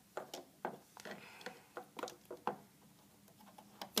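Light, irregular clicks and taps of a hook and rubber bands against the plastic pins of a bracelet loom as bands are placed and stretched onto it.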